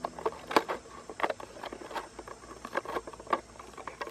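Handling noise: irregular sharp clicks and crinkles from a plastic bottle and a thin wooden stick worked by hand against a cardboard box, the sharpest click just over half a second in.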